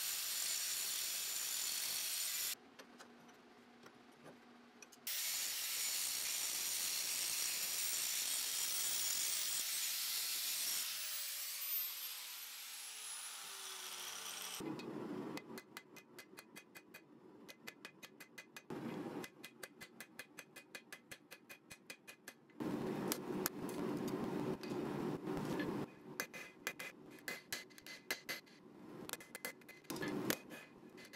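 Angle grinder cutting into a steel billet, sparks flying, easing off briefly and starting again, then winding down with a falling whine. After that comes a quick, steady run of hammer strikes on glowing hot steel at the anvil, several a second.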